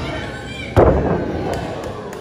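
A wrestler's body slamming down onto the wrestling ring mat about a second in: a single loud boom of the ring, fading over about a second. Voices from the crowd shout around it.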